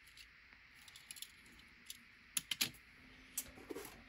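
A few faint, sharp clicks and taps, several close together about two and a half seconds in and one more near the end, from a small diecast toy car and its packaging being handled and the car set down on a hard tabletop.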